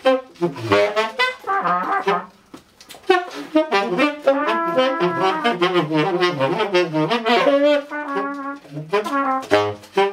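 A small jazz quartet playing live: tenor saxophone and trumpet playing lines together over double bass and drums. There is a brief near-gap about two and a half seconds in.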